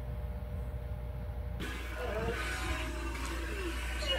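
A steady low hum, then from about a second and a half in, faint voices join it.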